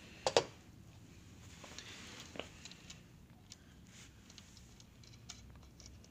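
Handling noise from a plastic handheld programmer and its cables: two sharp clicks close together about a third of a second in, then faint scattered ticks and light scratching as the wires are moved about.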